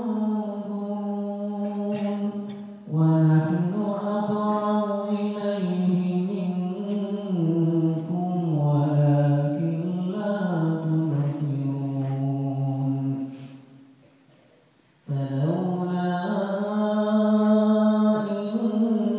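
A man reciting the Qur'an solo in melodic tajweed style, amplified through a hand microphone: long phrases of held, ornamented notes that glide up and down in pitch. The voice breaks off for a breath about thirteen seconds in and falls almost silent, then starts a new phrase about two seconds later.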